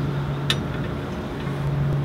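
A single sharp click about half a second in, as the end of a toe-measuring gauge is set against the tire, over a steady low hum.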